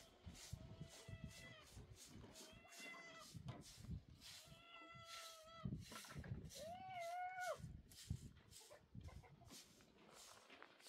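A cat meowing faintly four times, the last meow the loudest, rising and then falling. Short knocks and scrapes of hand work run under the meows.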